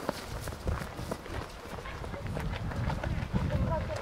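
Several children's running footsteps on grass, a quick irregular patter of soft thuds.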